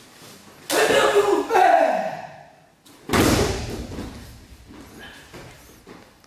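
Sparring scuffle in a knife-defence drill: a loud shout with movement on the gym mat, then a sudden heavy thud about three seconds in.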